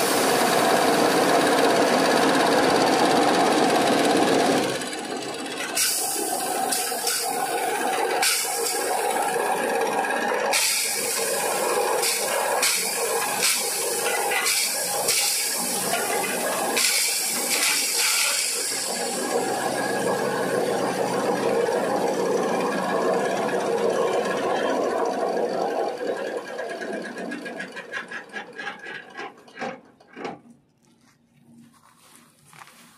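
Electric grinding mill on a multipurpose chaff cutter running and pulverising hard dried turmeric roots into fine powder. A loud, steady grinding whir turns rougher and uneven through the middle as the pieces are crushed, then fades out in the last few seconds as the machine runs down.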